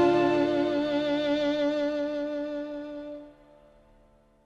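Violin holding a long final note with vibrato, dying away and gone a little over three seconds in.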